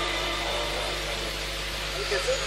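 Steady hiss and low electrical hum of a live sound system in a pause, with the audience's voices fading away.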